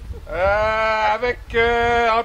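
A man's voice drawing out two long held syllables while announcing, the first rising in pitch then holding, the second held level.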